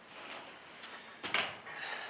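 A single short knock about a second and a half in, over faint room sound.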